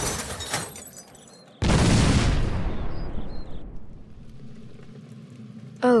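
Explosion sound effects: a blast already dying away at the start, then a second, louder blast about one and a half seconds in that fades out over a couple of seconds.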